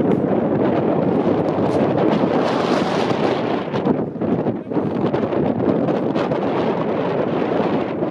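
Wind buffeting the microphone, a loud, steady rushing rumble that eases briefly about halfway through.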